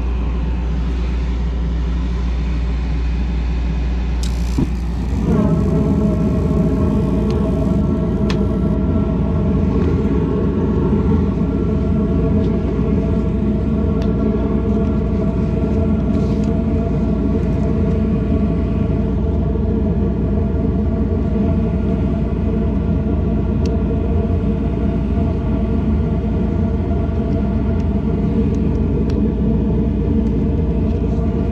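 A motor in a 2003 Carrier gas pack starts up about five seconds in, rising briefly in pitch as it spins up, then runs steadily with a hum and whine over a low rumble.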